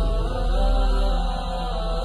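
Soundtrack of sustained, drone-like chanting voices over a deep, steady low hum.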